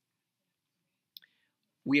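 Near silence: room tone, with one faint short click about a second in, then a man starts speaking near the end.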